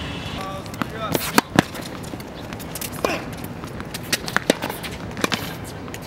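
Indistinct talk from a group of young men, broken by several sharp smacks, the loudest two in quick succession about a second and a half in.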